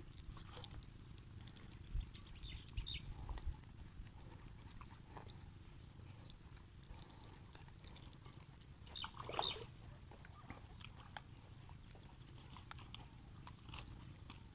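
Quiet outdoor background with a steady low rumble, a few soft knocks about two to three seconds in, and one short animal call about nine seconds in.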